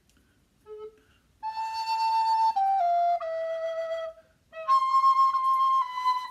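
Wooden alto recorder (a handmade Bressan copy with its A440 body) playing, starting about a second and a half in: a held note that steps down through a few lower notes, then after a short pause for breath a higher held note.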